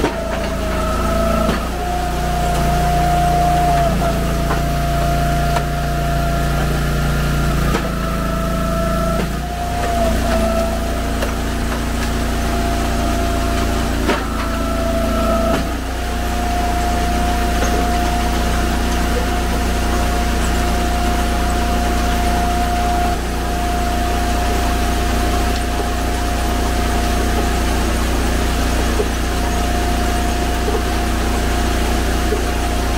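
Eastonmade 22-28 hydraulic log splitter's engine and hydraulic pump running with a steady hum and whine. Through the first half the pitch shifts and dips several times as the machine takes load, then it runs steady.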